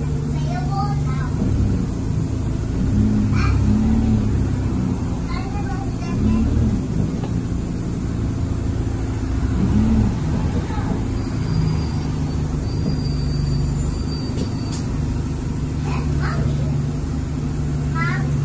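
Inside the saloon of an Alexander Dennis Enviro200 single-deck bus: the diesel engine runs with a steady low hum and rumble, while passengers talk in the background.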